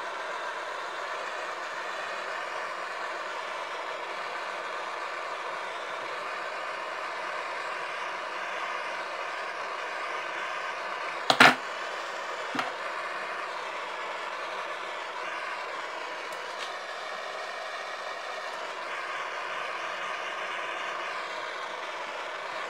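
Handheld gas torch burning with a steady hiss as it heats a metal part clamped in a vise, softening it for bending. A single sharp knock about halfway through and a lighter tap a second later.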